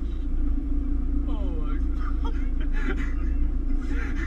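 Car driving through floodwater, heard from inside the cabin: a steady low engine and road rumble with water splashing against the car, and brief voices of the people inside.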